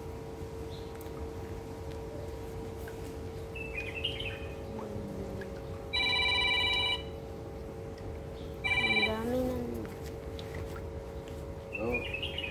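An electronic tone of several steady pitches at once sounds for about a second, starting and stopping abruptly, about six seconds in; a shorter, similar tone follows about three seconds later. A steady low hum runs underneath.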